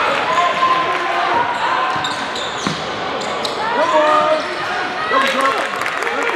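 Basketball dribbled and bouncing on a hardwood gym court during a game, among the voices of players and spectators in the hall.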